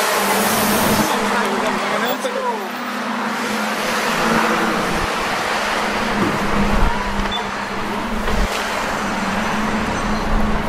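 A city bus's engine running as it pulls in to the stop and idles while passengers board, over steady street traffic, with people's voices mixed in.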